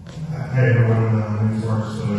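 A low, steady hum with a buzzy edge that sets in about half a second in and holds at one pitch.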